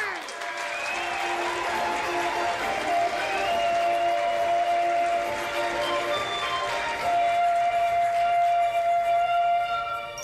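Television programme theme music with long held notes, with applause underneath.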